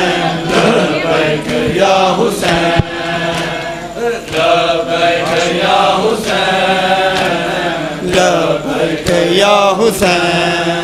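Men's voices chanting a Shia nauha lament together, led over a microphone, with sharp slaps of hands on chests (matam) about once a second.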